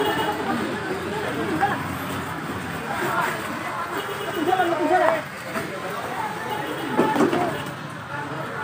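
Several bystanders' voices talking and calling out at once, overlapping so that no words come through clearly, over a steady outdoor background noise.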